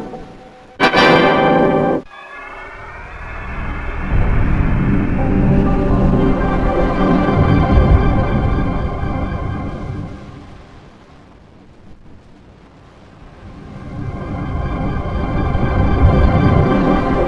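Effect-processed Windows startup jingles: a short, loud chord burst about a second in, then a long electronic chord that swells up and slowly fades away, with another swell beginning near the end.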